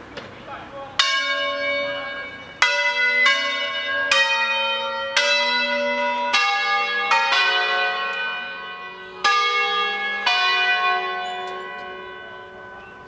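Five-bell church peal in F-sharp, cast by Carlo Ottolina e Figli of Seregno, rung as a solemn full peal with the bells swinging. About ten strikes of different pitches fall at uneven intervals, each ringing on and overlapping the next, and the ringing dies away near the end.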